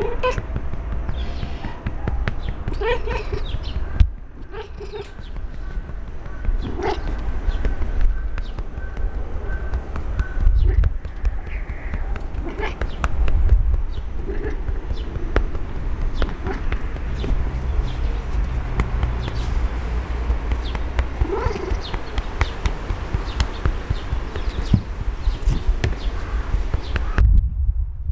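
A hand patting a large long-haired cat's rump in a quick run of pats, which the sensitive microphone picks up as heavy low thumps. Several times the cat gives short, trembling vocalisations, its sign of enjoying the patting.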